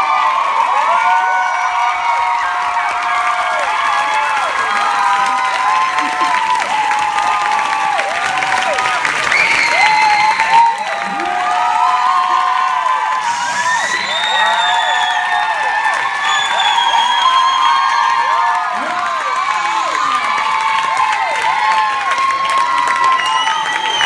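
A large theatre audience cheering and applauding, with many overlapping high-pitched screams and whoops over the clapping.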